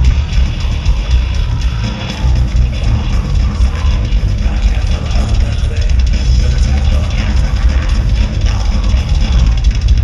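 Live heavy metal band playing: distorted electric guitar, bass guitar and a drum kit, loud and dense throughout, with a heavy low end.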